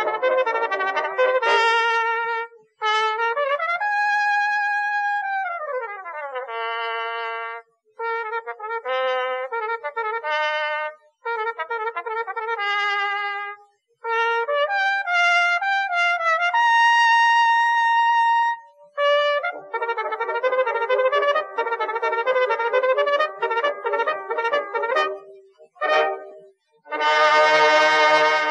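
Brass music led by a trumpet, played in short phrases with brief pauses between them. About five seconds in, the pitch slides smoothly downward. Near two-thirds of the way through, one note is held long.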